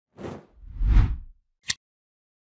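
Logo-reveal sound effect: a short whoosh, then a longer, louder whoosh with a deep low rumble, ending in a single sharp click near the end.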